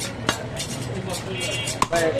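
Large butcher's knife chopping goat meat on a wooden log chopping block: three sharp knocks, the loudest near the end.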